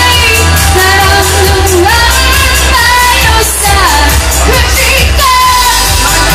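Loud live band music with a female singer: her sung melody gliding over a heavy bass line, drums and cymbals.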